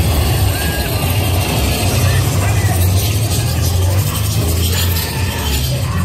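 Steady low rumble of a theme-park ride vehicle travelling through a dark section, strongest in the middle, with ride music and indistinct voices over it.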